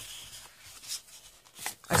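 Sheets of designer paper rustling and sliding against each other as one sheet is moved aside to show the next, with a few soft taps in the second half.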